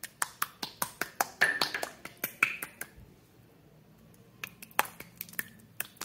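Clear purple slime squeezed and kneaded in the hand, giving a rapid run of sharp clicking pops, a short lull in the middle, then more clicks near the end.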